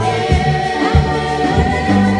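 Gospel choir of women singing together with a live band: keyboard and guitar over bass notes and drum beats.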